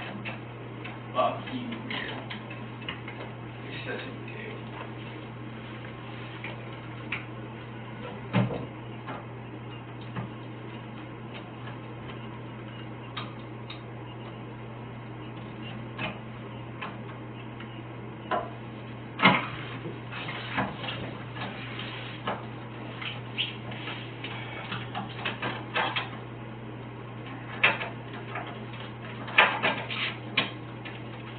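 Steady low electrical hum in a small room with scattered clicks, knocks and rustles, the sharpest about 8, 19 and 29 seconds in, and some faint, low voices.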